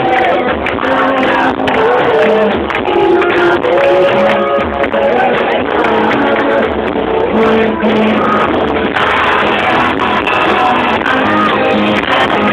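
Live band playing loud, continuous music, with a voice singing.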